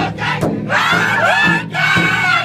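Powwow drum group performing a crow hop song: several men strike a large shared drum in unison while singing in high, strained voices. About two-thirds of a second in, a new high, sliding vocal phrase comes in over the drumbeats.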